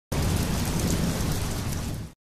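Steady rain with a deep rumble of thunder beneath it, starting abruptly.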